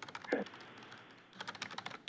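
Typing on a computer keyboard: a quick, irregular run of clicks, thickest in the second half.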